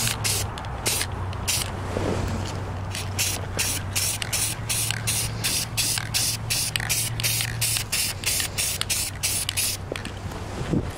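Aerosol spray-paint can spraying in rapid short bursts, about three a second.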